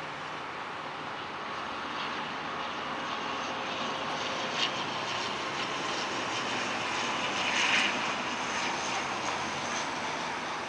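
ATR 72 twin turboprop engines and propellers on approach, a steady rush with a faint hum that slowly grows louder and swells near the end. A brief sharp tick sounds a little before halfway.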